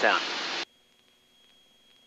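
The tail of a spoken word over the aircraft intercom, then a short burst of radio static that cuts off abruptly about half a second in. Near silence follows, with only a faint steady high-pitched whine.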